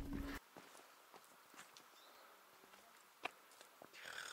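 Near silence, with a few faint scattered ticks and one sharper click a little past three seconds in.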